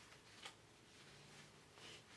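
Near silence: room tone, with a brief faint tick about half a second in and a soft rustle near the end.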